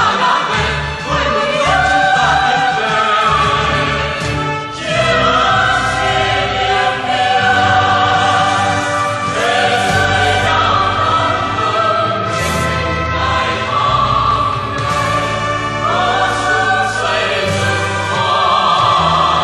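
A choir singing a Vietnamese revolutionary song with instrumental accompaniment, in long held phrases of a few seconds each over a steady bass line.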